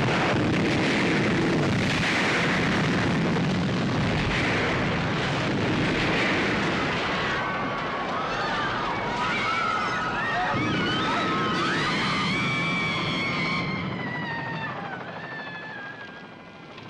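Film soundtrack of a large explosion and a long, dense rumbling roar of fire. From about halfway, several high, wavering screams rise over the rumble and fade near the end.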